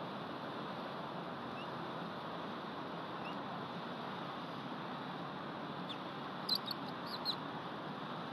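Steady outdoor hiss from the nest microphone, broken about six and a half seconds in by a quick run of four or five short, high bird calls. Two fainter chirps come earlier.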